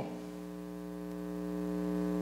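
Steady electrical mains hum, a low buzz with many evenly spaced overtones, slowly growing louder.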